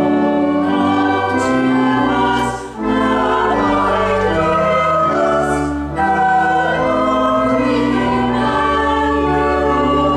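Church choir singing a carol in parts, accompanied by organ holding long low notes, with a short break between phrases about three seconds in.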